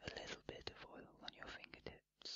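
Soft close-miked whispering, broken by many small mouth clicks.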